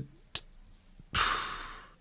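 A man's audible breath close to the microphone: a short mouth click, then about a second in a noisy rush of air that starts sharply and fades away over most of a second, as he gathers himself mid-sentence.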